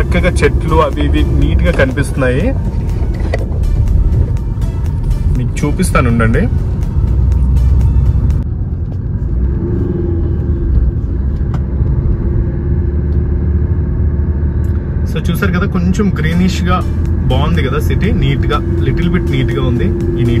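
A car driving, heard from inside the cabin: a steady low rumble of engine and road noise. A voice and music sound over it for the first few seconds and again near the end.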